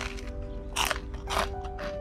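Chewing a bite of cinnamon cream cheese toast, with two short crunches, the first a little under a second in and the second about half a second later, over steady background music.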